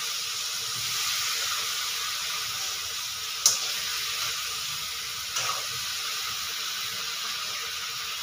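French beans sizzling steadily as they fry in a kadhai, with a sharp clink of the spatula against the pan about three and a half seconds in and a lighter one about two seconds later.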